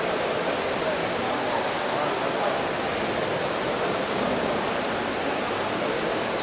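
Steady noise of a swimming race in an indoor pool: continuous splashing from several swimmers doing front crawl, mixed with a background hum of voices.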